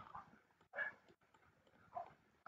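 Near silence: faint room tone, with one faint, brief sound about a second in.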